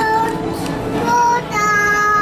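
A high voice singing with music: short notes, then a long held note in the second half.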